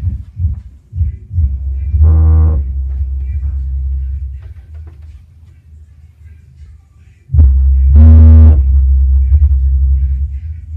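Bass-boosted rap music played very loud through a Logitech Z-2300 subwoofer. A few short deep bass hits come first, then long low bass notes. The notes are loudest about two seconds in and again from about seven seconds, with a quieter gap between.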